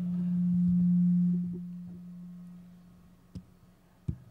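A low steady hum from the stage sound system, swelling to its loudest about a second in and then fading away over the next two seconds, with a faint click near the end.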